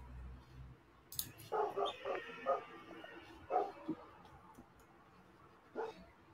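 Faint animal cries: a cluster of short, high-pitched yelps about a second and a half in, and one more about three and a half seconds in.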